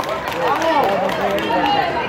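Many children's voices calling out and chattering at once, several high-pitched voices overlapping.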